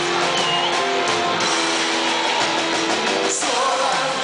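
Live band music played loud through the PA, with a singer over electric guitar and keyboards, continuous throughout.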